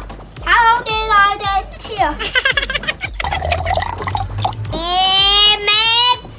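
A young boy's voice making pretend crying and whimpering sounds, with a hissing noise in the middle, then one long drawn-out vocal sound near the end.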